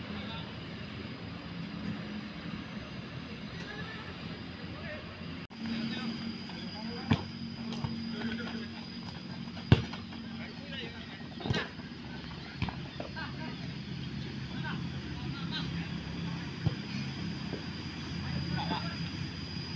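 Outdoor football pitch sound: distant shouting of players over a steady low hum, with a few sharp thuds of a football being kicked, the loudest about ten seconds in.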